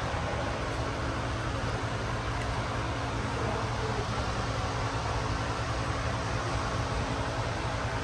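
Large fan running steadily: an even rushing noise over a low hum.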